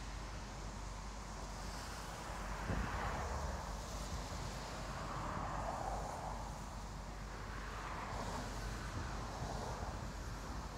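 Road traffic passing: several vehicles go by one after another, each a swelling and fading wash of tyre and engine noise, over a low rumble of wind on the microphone.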